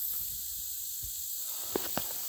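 A steady, high-pitched outdoor hiss with two faint clicks near the end.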